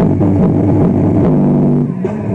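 Electric bass guitar playing held low notes, moving to a new note a little past the middle.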